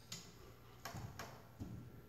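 A few faint clicks and taps: a dog's claws shifting on a wooden bench.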